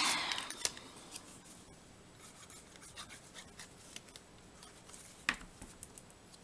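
Quiet handling of cardstock pieces and a glue bottle: light rubbing and faint ticks, with one sharper knock about five seconds in.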